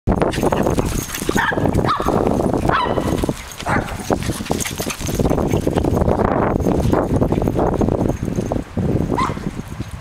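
Small dogs barking in short, high yips as they chase each other, about five barks, most in the first four seconds and one near the end, over a constant low rumble.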